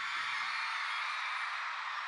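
A large arena crowd cheering and applauding steadily once the song has ended.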